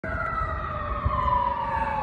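Emergency vehicle siren wailing in the background, its pitch falling slowly, over a low rumble.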